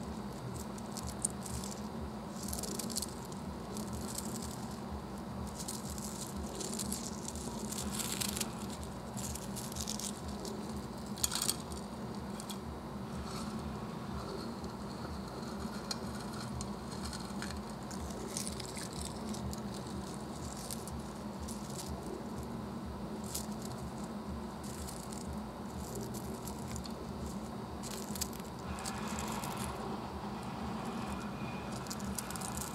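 Small black glassy lumps being shifted about in a palm, giving scattered faint clicks and brief rustles over a steady low hum; the most distinct rustles come about eight and eleven seconds in.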